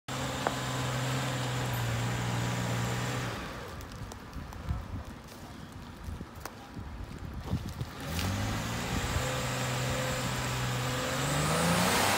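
Toyota Prado 120-series 4WD crawling over a rutted dirt track. Its engine runs steadily for about three seconds, then goes quieter amid scattered knocks, then picks up again about eight seconds in with the revs rising near the end.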